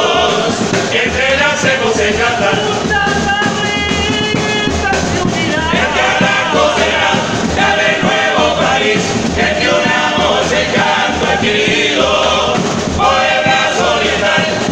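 A murga chorus of men's voices singing a song together in harmony, in the full-throated Uruguayan carnival style.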